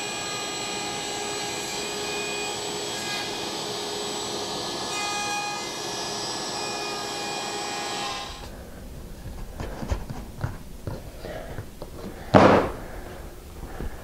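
Table saw running with a steady motor whine while crosscutting board ends on a sled. The sound cuts off about eight seconds in and is followed by light knocks and one louder thump near the end.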